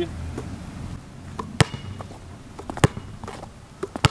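Basketball bouncing on brick pavement: two sharp bounces about a second apart in the middle, and another at the very end, as the ball is swung around the body and bounced behind the back.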